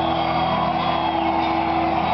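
Live metal band of electric guitars, drums and keyboard, with one long note held through, recorded loud and distorted on a camera microphone in the crowd.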